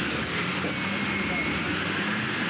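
Diesel engines of two Fendt tractors running steadily under load as they drive side by side through deep mud, a continuous even engine noise with a low hum.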